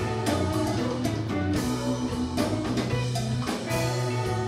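Live band playing a blues number on electric guitars, bass and drum kit, with a steady drum beat under sustained bass notes.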